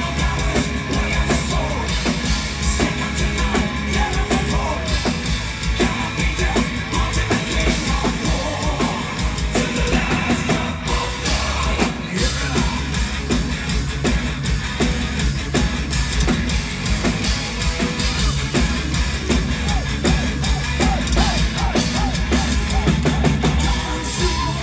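A heavy metal band playing live at full volume: a drum kit with a heavy bass drum, distorted electric guitars and bass, and a male lead singer.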